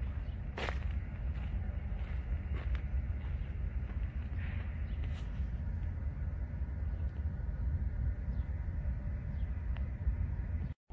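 Wind buffeting the microphone outdoors: a steady low rumble, with a few faint ticks.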